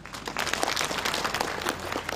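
Audience applauding: many hands clapping together, starting a moment in.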